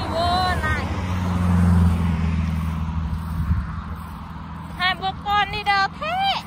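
A motor vehicle passing on the highway beside the cycle path: a low engine and tyre drone that swells to a peak about two seconds in and fades away by about three and a half seconds.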